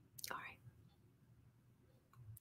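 A woman softly says one word, then near silence: room tone.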